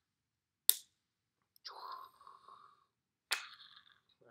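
Small handling sounds: a sharp click about a second in, a short soft rustle, and a second click near the end, as a marker is capped and set down and the wooden and plastic fraction pieces are moved on the cloth.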